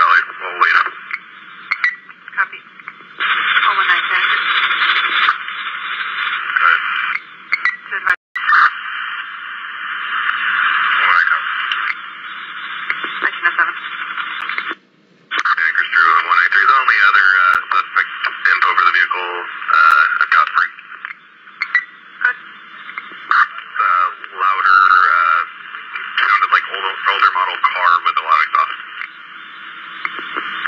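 Police dispatch radio traffic: muffled, unintelligible voices over a narrow-band two-way radio channel, mixed with stretches of hissing static. The audio drops out briefly twice, near 8 s and 15 s in.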